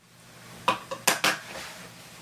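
Four short, sharp clicks of small hard objects within about half a second, over faint room noise.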